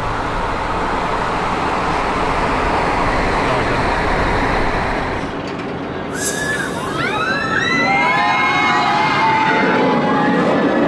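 Steady road and engine noise from inside a moving car for about five seconds. Then, after a sudden rush of noise, an inverted steel roller coaster train passes overhead with many riders screaming together.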